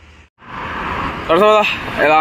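Steady roadside traffic noise rising in after a brief dropout near the start, with a man starting to speak about one and a half seconds in.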